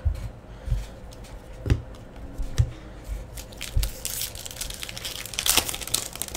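A few soft knocks of cards and packs being handled on a table, then a foil trading-card pack wrapper crinkling and tearing open, loudest near the end.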